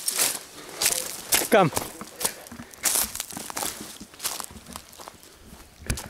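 Irregular footsteps scuffing and rustling through dry fallen leaves and twigs on a slippery slope, with a short call of "Come!" about a second and a half in.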